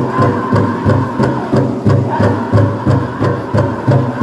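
Powwow drum group playing a jingle dress contest song: the big drum struck in a steady beat about three times a second, with the singers' voices carried over it.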